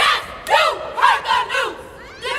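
Group of women shouting a stroll chant in unison: about five loud syllables in quick succession, the last trailing off near the end.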